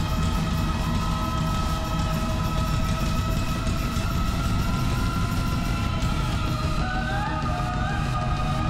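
Live band music: a long, held high synthesizer note and a steadier lower tone over a dense low pulse from drums and bass, with a few short gliding notes near the end.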